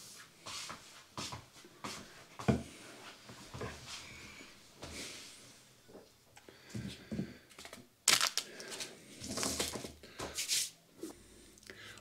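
Plastic seed trays and their clear lids being handled and set down in a larger plastic tray: a run of light clicks, knocks and plastic rustling, with sharper knocks about two and a half seconds in and again at about eight seconds.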